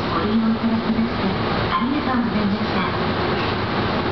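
Electric train running slowly along a station platform, its wheels and running gear making a steady rumble, with a recorded onboard announcement voice over it.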